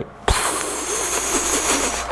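A steady sizzling hiss, like a hot branding iron searing into leather. It starts a moment in with a click and lasts about a second and a half.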